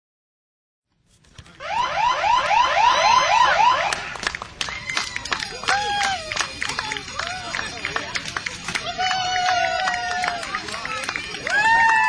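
After about a second of silence, an electronic siren yelps rapidly, about four rising sweeps a second, for roughly two seconds. Then people whoop and call out over scattered clicks.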